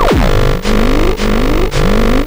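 Hard electronic groove from a Perkons HD-01 drum machine and modular synthesizer: a heavy drum hit about every half second, with a synth note gliding upward between the hits. A quick falling swoop marks the first hit.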